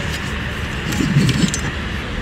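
Outdoor city street ambience: a steady low rumble of traffic and open-air noise picked up by a phone microphone, with a few light ticks and a faint voice about a second in.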